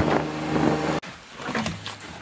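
Kawasaki Mule utility vehicle's engine running and easing off, then cutting off suddenly about a second in, leaving only faint knocks and rustling.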